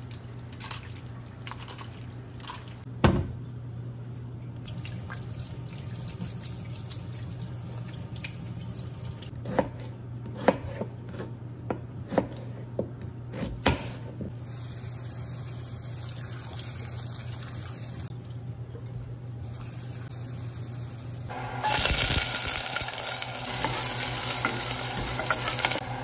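Seasoned raw chicken pieces handled wet in a plastic colander at a stainless steel sink, with one loud knock early on. Then a knife cuts potatoes on a cutting board in a few sharp knocks. Near the end, chopped onions start sizzling in hot oil in a pot, the loudest sound, over a steady low hum.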